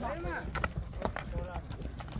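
Horses milling in a tight pack on loose earth, with scattered soft hoof knocks and shuffles, under faint men's voices and a low rumble.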